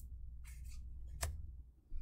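Pokémon trading cards sliding against one another as they are flipped through one by one: a soft papery rustle about half a second in, then a single sharp click just past a second.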